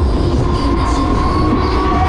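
Huss Break Dance ride running, heard from on board: a loud, steady low rumble of the turning machinery with a steady whine over it.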